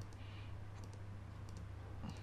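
A few faint computer mouse clicks, spaced well apart, over a steady low hum.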